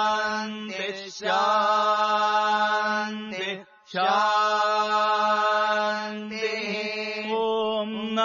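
Vedic mantra chanting: long, drawn-out syllables held on one steady pitch, in phrases of a few seconds broken by short gaps.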